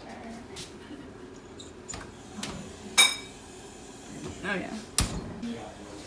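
Kitchen handling sounds around an oven and stovetop: a few light knocks, then a sharp metal clink that rings briefly about halfway through, and a hard knock near the end, with low voices in between.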